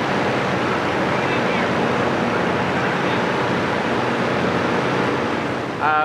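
Engine-driven firefighting ventilation fan running steadily: a constant rush of moving air over a low, even engine hum.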